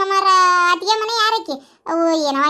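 A high-pitched cartoon character's voice drawing out one long held syllable, almost sung, then a few quick shorter syllables, falling quiet briefly near the end.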